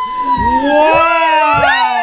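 Several voices cheering and squealing excitedly at once, overlapping, some held in long rising and falling squeals.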